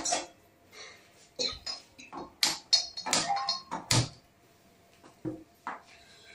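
Metal kitchen utensils clinking and knocking: one knock at the start, then a quick run of clinks from about a second and a half to about four seconds in, several ringing briefly, and two softer knocks near the end.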